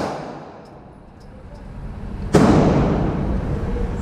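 The echo of a 9mm shot from a Stoeger STR-9 pistol dies away in an indoor range. About two and a half seconds in comes a second sudden loud bang, followed by steady noise.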